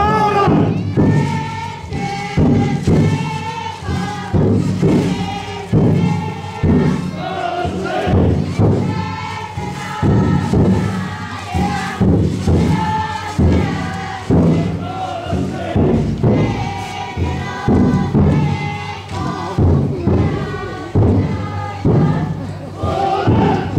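Taiko drum inside a futon daiko festival float beaten in a steady rhythm, roughly one beat a second, while a group of bearers chant and call together.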